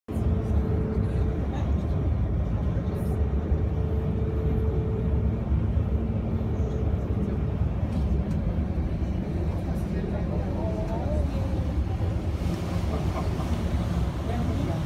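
A boat's engine running steadily under way: a loud low drone with water rushing, and a steady higher hum over it that stops about halfway through.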